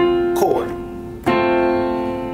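A chord played on a keyboard piano, struck twice about a second and a quarter apart, the notes ringing on and fading slowly after each strike.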